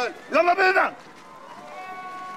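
A loud voice calling out in short, pitch-bending phrases that stops about a second in. Faint, steady sustained musical notes then begin near the end.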